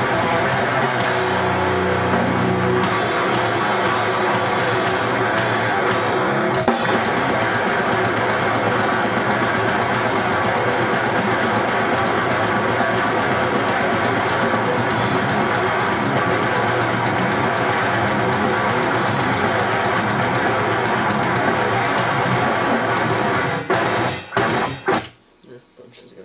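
Loud playback of an unmixed grindcore track, with dense drums and guitars running without a break until it stops about 24 seconds in.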